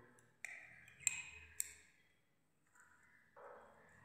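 Faint scratching of a pen drawing a straight line on card, with a few short sharp ticks in the first second and a half.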